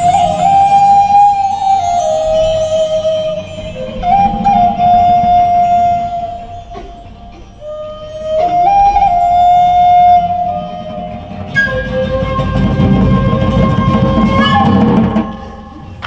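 Wooden flute playing a slow melody of long held notes with slides between them, in three phrases, over quiet guitar and hand-drum accompaniment. The music ends about fifteen seconds in.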